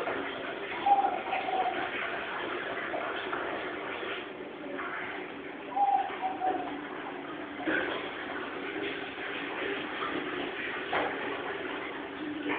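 Steady background hiss with two short cooing calls like a dove's, each a slightly falling note, about a second in and again near six seconds; a few soft knocks come later.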